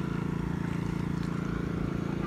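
Small engine driving a water pump, running steadily at constant speed while pumping water out of the pond.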